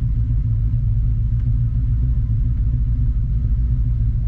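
1983 Dodge Ramcharger's engine idling, a steady low rumble heard from inside the cab.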